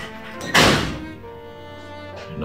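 A door slamming shut once, a single loud bang about half a second in, over soft background music.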